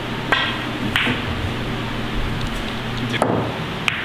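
Sharp clicks of a pool shot: the cue striking the cue ball, then billiard balls clicking together about a second in, and two more knocks near the end. A steady low hum runs underneath.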